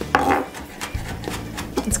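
Chef's knife chopping and scraping minced jalapeño on a wooden cutting board: a scraping rub just after the start, then a few light knocks of the blade on the board.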